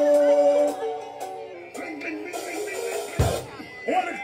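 Live dancehall performance heard through the PA: music with a long held note at the start, then shifting pitched parts, and a single heavy thump about three seconds in.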